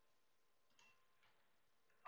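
Near silence with one faint mouse click about a second in.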